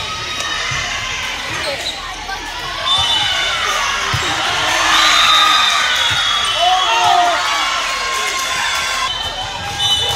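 Indoor volleyball rally in a large gym hall: the ball struck with sharp slaps amid the voices of players and spectators, the noise swelling around the middle of the rally and easing off toward the end.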